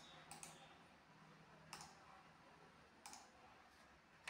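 Near silence: faint room hiss with a handful of faint, sharp clicks spread through it.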